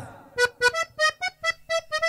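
A solo melody of short, separate notes with an accordion-like sound, opening a cumbia medley.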